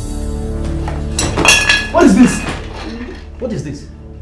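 Background film music with a few sharp clinks, like metal or crockery, about a second in, and a brief voice shortly after.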